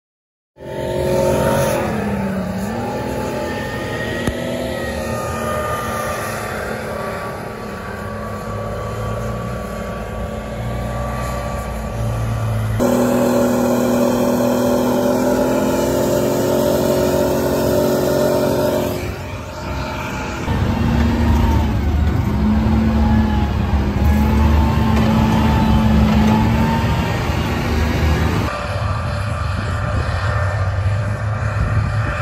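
M113 armoured personnel carrier engines running as the vehicles drive over sandy ground, the engine pitch rising and falling with speed. The sound changes abruptly three times, as one clip cuts to the next.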